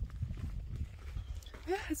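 Footsteps on a dry, rocky dirt trail, with wind rumbling on the phone's microphone. A woman's voice starts near the end.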